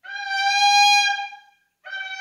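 Trumpet played alone: one long, high held note that swells and then fades, followed after a brief gap by a new note that scoops up into pitch near the end.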